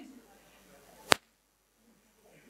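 A single sharp click or knock about a second in, against faint room noise.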